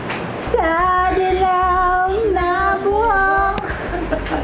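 A high voice singing a melody in long held notes, over background music, from about half a second in until shortly before the end.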